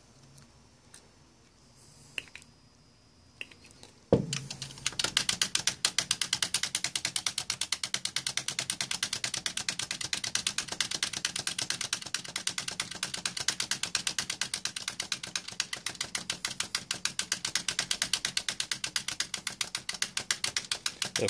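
Selector switches on a vintage stereo receiver being worked rapidly back and forth, a fast, even run of clicks at about five or six a second that starts about four seconds in. The switches are being exercised to spread contact cleaner through them and clean their contacts.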